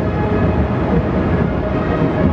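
A column of eight-wheeled armoured personnel carriers driving past: their engines and tyres make a steady, heavy rumble.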